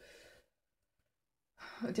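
A short, faint breath out like a sigh, then near silence for about a second, before a woman's voice starts speaking again near the end.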